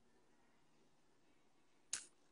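Near silence: room tone, with one short sharp sound near the end.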